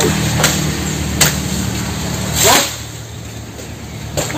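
Chainsaw engine running at a low, steady speed, then dropping to a lower note about two and a half seconds in, just after a brief louder swell. A couple of sharp clicks come in the first second.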